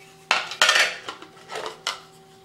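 Revolver being handled against a hard Kydex holster: two sharp clattering knocks about a third of a second and just over half a second in, then a single short sharp click near the end.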